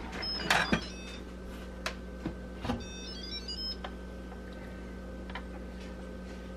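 The lid of an Instant Pot electric pressure cooker being twisted open and lifted off after the pressure has come down: a few light plastic and metal clicks and knocks in the first three seconds. A short run of electronic tones sounds twice, over a faint steady hum.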